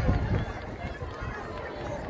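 Chatter of a group of young people talking at a distance, over an irregular low rumble that is loudest in the first half second.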